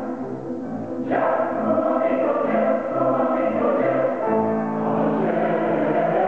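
A large mixed choir singing, growing louder about a second in, over repeating low notes.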